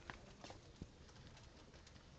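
Near silence: faint room tone with a few soft clicks and scratches in the first second, from a dry-erase marker writing on a whiteboard.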